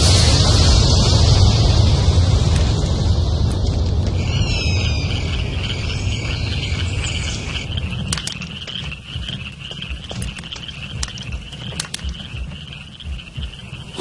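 Low rumbling noise that fades away over the first half, giving way to a steady high-pitched trilling chorus, like a night chorus of frogs, with a few sharp clicks.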